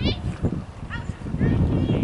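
High-pitched girls' voices calling out on a soccer field, over a low, uneven rumble that grows louder in the second half.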